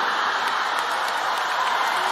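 Live theatre audience applauding, a dense steady clapping that swells up just before and holds throughout, with laughter mixed in.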